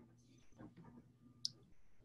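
Near silence, faint room tone, with a single short click about one and a half seconds in.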